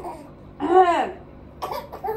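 A young baby vocalizing: one drawn-out note that rises and falls about half a second in, then a few short sounds near the end.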